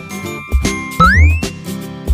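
A short, bright, tinkling music jingle with a beat of about two low hits a second. About a second in, a bright note glides sharply upward.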